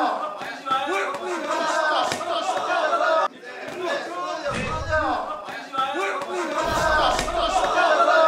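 Several men shouting and yelling over boxing-glove sparring, with sharp smacks of punches and two deep thumps in the second half.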